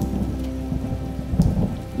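Rain falling, with a low rumble of thunder through the first second or so.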